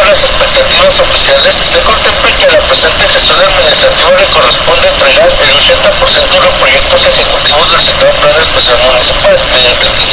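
Speech from an AM radio newscast recorded off the air: a voice sounding thin and hissy, under steady static.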